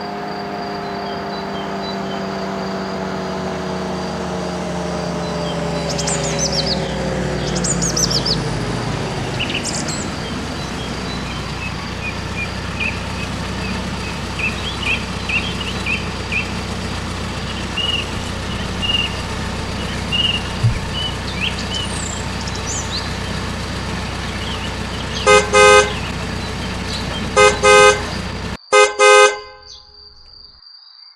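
Car engine running, its pitch falling over the first ten seconds and then settling to a steady low rumble, with birds chirping. Near the end a car horn gives several short, loud honks, and the engine sound cuts off suddenly just before the last honks.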